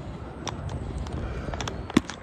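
Low, steady rumbling background noise on a handheld phone microphone outdoors, with a few faint clicks and one sharp click just before the end.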